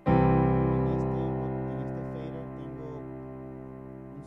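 Digital piano sound played on a Yamaha MODX synthesizer keyboard: one chord struck just after the start, held and slowly fading away.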